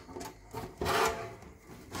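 Sheet-metal top cover of a Kenwood CD player scraping and rubbing against the chassis as it is pried up and lifted off by hand, loudest about a second in.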